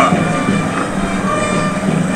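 Steady stadium crowd noise carried on a live football broadcast, an even hum of the crowd with no single standout event.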